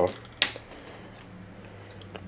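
One sharp click about half a second in as a plastic ammo clip is snapped off an action figure.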